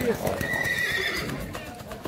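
Arabian mare whinnying: one high call starting about half a second in and lasting under a second.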